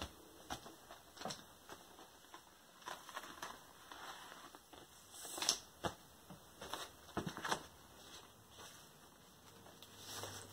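Faint rustling and light taps of a cardboard LP record jacket being handled and turned over, with scattered small clicks and the loudest rustle about five and a half seconds in.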